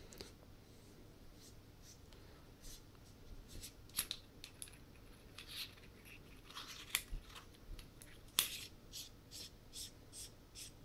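Faint, scattered clicks and light scrapes of a small anodised-aluminium flashlight being handled and its threaded body tube turned, as it is set up to run on an 18350 battery. The sharpest clicks come about 4, 7 and 8½ seconds in.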